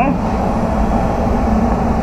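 Spray booth's ventilation fans running, a steady rush of air with a low rumble.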